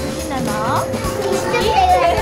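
Young girls' excited voices, with one quick rising squeal, over background music.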